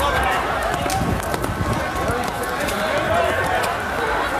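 Footfalls of people running on pavement, a rapid scatter of sharp steps, with indistinct shouting voices of a crowd.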